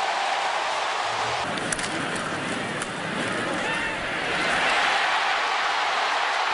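Large stadium crowd noise heard through a TV broadcast, a steady din of many voices, with a few faint clicks about two seconds in.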